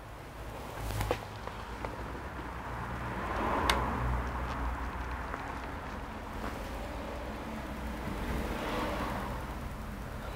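Light handling noise at a workbench while an external display cable is hooked up to a laptop, with a sharp click about a second in and another near four seconds in, over a steady low mains hum.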